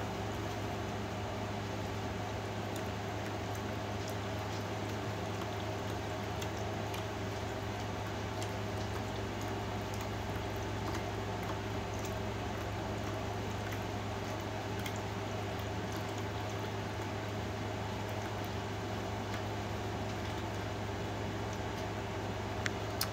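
Steady, even hum of a running household appliance, with a few faint ticks over it.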